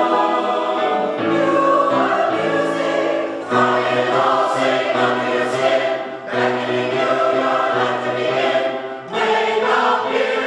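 Mixed choir of men's and women's voices singing held chords, in phrases broken by short breaths about every two to three seconds.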